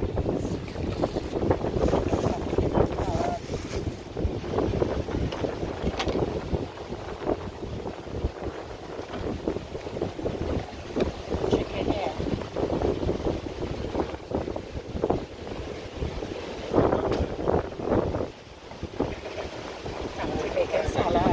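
Wind buffeting the microphone in a steady, uneven rumble, with indistinct voices talking in the background at times.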